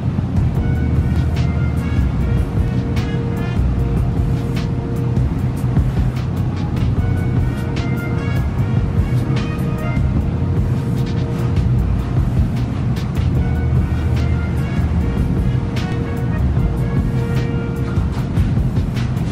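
Background music with a steady beat and a heavy bass line.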